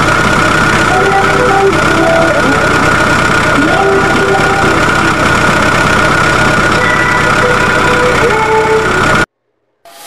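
Loud engine sound effect running steadily with a constant high whine over it, then cutting off suddenly about nine seconds in. A brief short sound follows just before the end.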